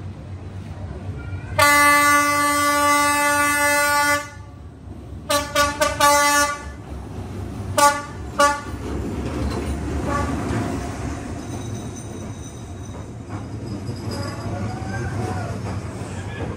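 Diesel locomotive horn: one long blast of about two and a half seconds, then four quick short toots and two more a couple of seconds later, as the train approaches. The rumble of the locomotive and its passenger carriages passing at close range then builds up.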